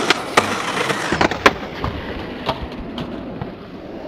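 Skateboard wheels rolling on asphalt, then a string of sharp knocks and clatters as the board and the skater hit the ground, the loudest about a second and a half in. The rolling noise fades away afterwards.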